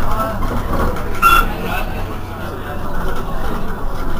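Irisbus Cristalis ETB18 trolleybus standing at a stop with a steady low hum, under voices. A brief high-pitched tone sounds about a second in.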